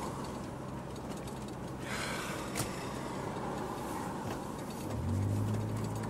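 Car engine running with road noise, a steady low hum. A brief rush of noise comes about two seconds in, and a louder, deeper engine hum starts near the end.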